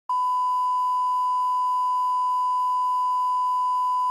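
Steady 1 kHz line-up test tone, a single unbroken pure beep played with SMPTE colour bars as the reference level for the recording.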